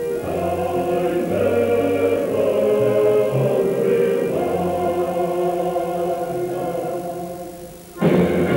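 Background music: a choir singing slow, held chords, fading out near the end.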